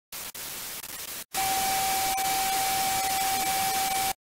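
Television static hiss, quieter for its first second, then a brief cut-out and louder static with a single steady tone over it, as on a colour-bar test pattern; it cuts off suddenly at the end.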